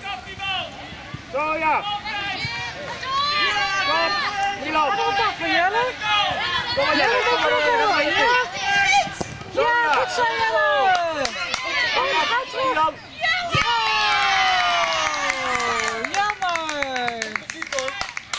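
Children cheering and shouting together after a goal: many high voices overlapping, with long falling shouts near the end.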